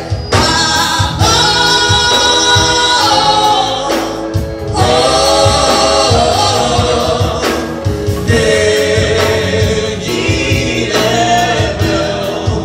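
Live gospel music: sung lead and choir-style backing vocals holding long notes in harmony over a band with a drum kit keeping a steady beat.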